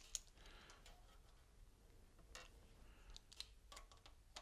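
Faint, scattered clicks of a Phillips screwdriver working screws out of the front of an air compressor, over near silence.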